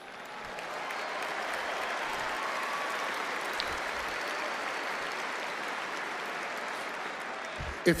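Large audience applauding steadily, swelling over the first second and holding until the speech resumes near the end.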